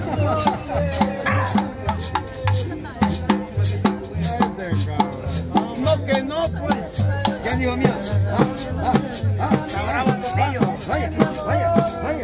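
Live band playing dance music: double bass pulsing a steady beat under drums and rattling percussion, with a voice over it.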